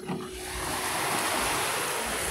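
Surf from small waves washing up a sandy beach, a steady rush with a faint steady tone under it for about the first second.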